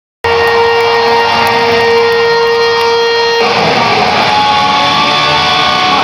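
Electric guitar solo played live through an arena sound system: one long held note for about three seconds, then a run of shorter, changing notes.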